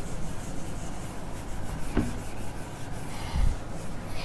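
Felt whiteboard eraser rubbing across the whiteboard in repeated scratchy strokes, with a short knock about halfway through.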